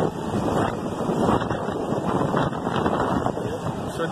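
Wind buffeting the microphone: an uneven rushing noise that rises and falls.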